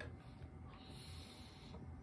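A faint breath, a soft hiss lasting about a second midway through.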